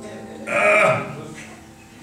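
A man's short strained vocal noise through a handheld microphone, about half a second in, then fading away: a mock show of straining hard, which he likens to constipation.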